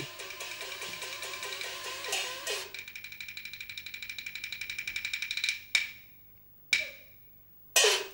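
Peking opera percussion ensemble: repeated gong strokes, then a fast run of sharp wooden strokes that speeds up and grows louder, broken off by three sharp crashes with short silences between them.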